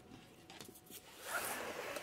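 Handling noise from a phone being moved by hand while it films: a rough scraping rub that begins about a second in, with a few faint clicks before it.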